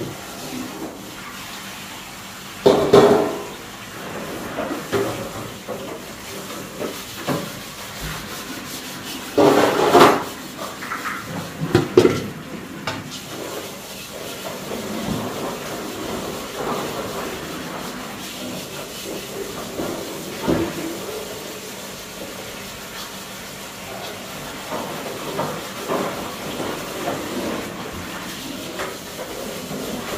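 Hand-scrubbing the soot-blackened outside of a large metal wok, a steady rasping with a few louder strokes about three, ten and twelve seconds in.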